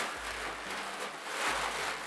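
Tissue paper rustling and crinkling as a shoe is lifted out of its wrapping in a shoebox.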